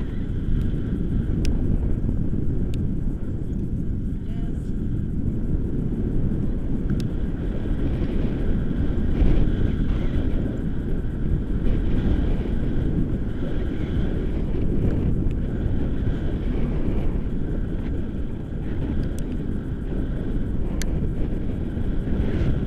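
Airflow buffeting the microphone of a pole-mounted action camera on a tandem paraglider in flight: a steady, fairly loud low rumble with no breaks.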